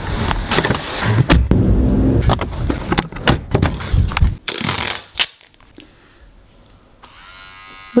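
Quick footsteps on paving with handheld-camera rustle and knocks as someone hurries along, then the clack of a door handle being worked as the door opens. After a brief quieter moment, a faint electric hum rises in pitch near the end, as hair clippers switch on.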